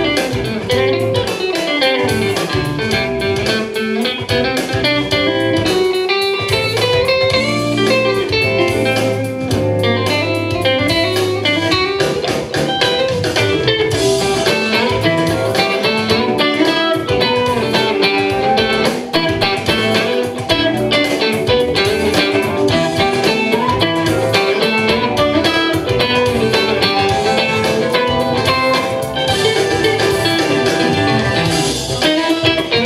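Electric guitar played in quick runs of notes that climb and fall, with a low note held for a few seconds near the middle.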